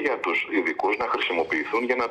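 Speech only: a man talking in Greek.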